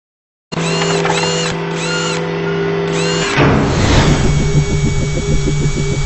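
Logo intro sound effects. A steady machine-like whir with four quick rising-and-falling chirps starts about half a second in. A whoosh comes a little past three seconds in, followed by a fast, even pulsing buzz.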